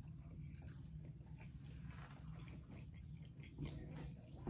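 Faint chewing of a mouthful of sushi roll: soft, irregular mouth sounds over a low steady hum.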